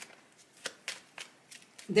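A deck of tarot cards being shuffled by hand: a series of soft card snaps, about three a second.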